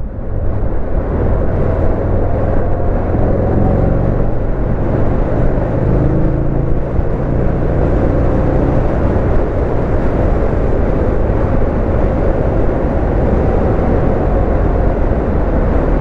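Buell XB12X motorcycle's air-cooled 1203 cc V-twin running under way, with heavy wind rush on the microphone. The engine note climbs a few seconds in as the bike pulls away, then holds steady.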